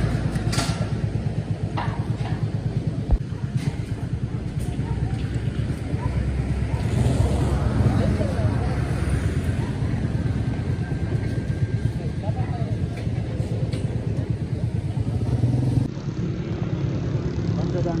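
A steady low engine rumble with people talking in the background, and a single sharp knock about three seconds in.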